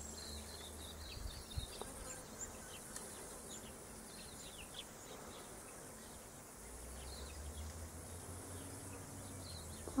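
Faint garden ambience: many short, high chirps scattered through, with a light high hiss in the first two seconds and a low rumble and a few soft clicks from the hand-held camera.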